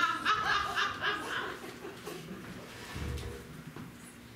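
Audience laughter, strongest in the first second and a half and then trailing off, with a low thump about three seconds in.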